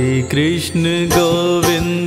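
Hindi Krishna devotional bhajan music: held melodic notes that glide from pitch to pitch over a steady low drone.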